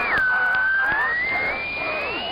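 A high, whistle-like tone that drops sharply in pitch at the start, then slowly climbs, with fainter wavering tones gliding beneath it.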